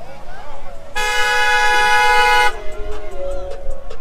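A car horn sounds in one long blast of about a second and a half, starting about a second in. It is followed by the low rumble of a vehicle driving close by, with voices around it.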